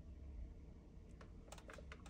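Near silence: room tone with a few faint, small clicks in the second half.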